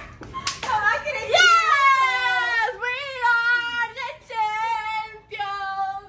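Young women's voices in long, high-pitched, drawn-out cries, one after another, with a couple of sharp hand slaps or claps about half a second in.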